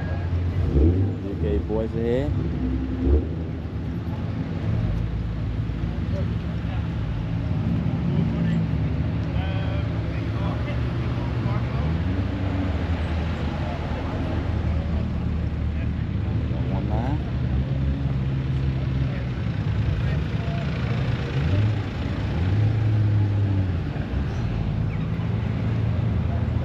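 A car engine running at changing revs, its pitch stepping and rising a few times as it pulls, with indistinct voices in the background.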